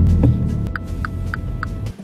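Car engine running just after starting, a loud steady low hum, with four short warning chimes about a third of a second apart in the middle. The sound cuts off suddenly near the end.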